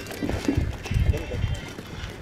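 Irregular low thuds and scuffing of feet and goat hooves on a hard dirt yard as a man spars with an aggressive Sojat buck, strongest in the first second and a half.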